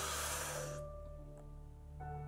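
A man draws a deep, noisy breath in through pursed lips, ending under a second in, as part of a lung-stretching breathing exercise. Background music plays underneath.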